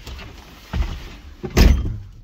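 Two dull thuds about a second apart, the second louder and sharper, with a car door or the car's bodywork the likely thing being knocked or shut.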